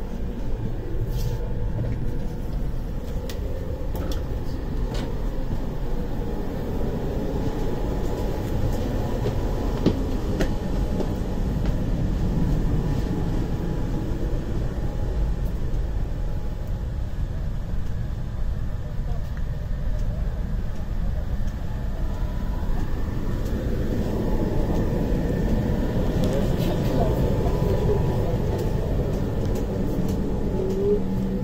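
Steady low rumble and hum inside a double-deck electric train carriage, the onboard ventilation and equipment running, with faint voices in the background.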